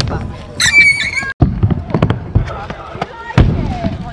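Stunt scooter clattering on skatepark ramps: sharp knocks and clacks of the deck and wheels striking and rolling on the ramp surface. A short, high-pitched squeal comes about a second in, then the sound cuts off abruptly before the clatter resumes.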